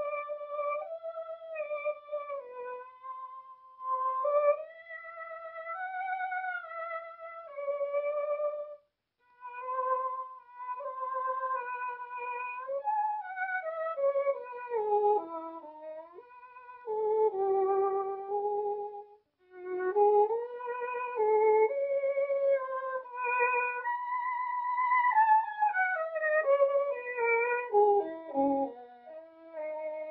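Solo violin playing a slow melody with a wide vibrato, in phrases with short breaks about nine and nineteen seconds in.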